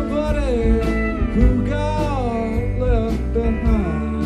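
Live rock band playing mid-song: guitars and drums under a lead line that glides and bends in pitch over a sustained low chord.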